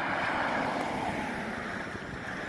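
Road traffic: a passing vehicle's steady tyre and engine rush, slowly fading.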